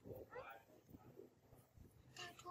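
A faint, brief rising squeak from a baby macaque about half a second in while it drinks from a milk bottle; otherwise near silence.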